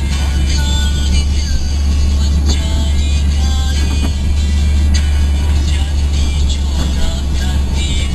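Steady low drone of a car driving, heard from inside the cabin, with music playing over it.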